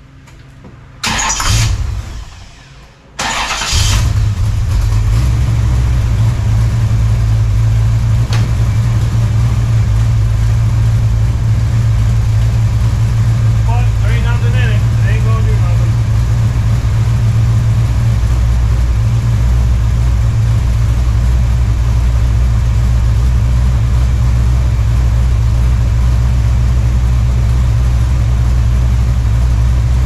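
1969 Chevelle's ZZ3 small-block V8 cranked over and started, with a first short burst about a second in and the engine catching about three seconds in. It then runs at a steady idle.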